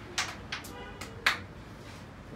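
Carrom striker and coins clacking on a wooden carrom board after a shot: a handful of sharp clacks over about a second, the loudest a little over a second in.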